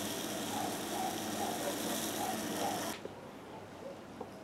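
Dry-aged beef steaks sizzling over charcoal embers on a parrilla grill: a steady, dense hiss that cuts off abruptly about three seconds in.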